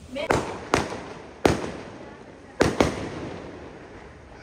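Fireworks going off: five sharp bangs spread over a few seconds, each trailing off after it, the last two close together.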